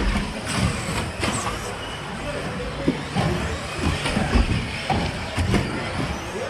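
Electric 1/10-scale 2WD RC buggies racing on an indoor track, a steady mix of motor and tyre noise with a few short thumps, under background voices.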